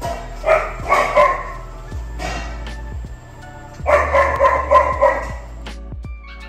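A young puppy crying out in two bursts, about half a second in and again around four seconds in, over background music.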